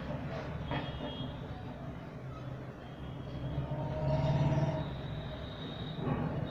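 Outdoor background noise: a steady low rumble with a faint higher haze, swelling for about a second a little past the middle.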